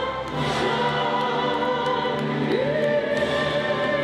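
Music with singing: long held sung notes over a full choral and orchestral backing. The leading voice slides up to a higher held note about two and a half seconds in.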